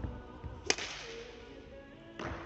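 A badminton racket strikes a shuttlecock once, about two-thirds of a second in: a single sharp crack that rings on in the echo of a large hall.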